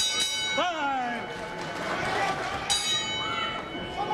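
Boxing ring bell struck once right at the start and again near three seconds in, each strike ringing on and slowly fading: the bell ending one round and starting the next. Crowd noise runs underneath, with a short shout soon after the first strike.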